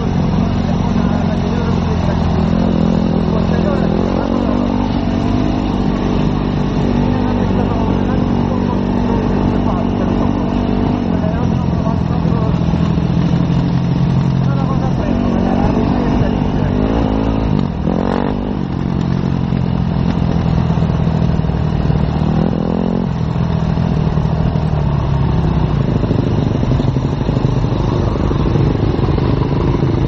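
Enduro motorcycle engine running under way, its pitch rising and falling repeatedly as the bike accelerates and changes gear, with a sharp rev about eighteen seconds in.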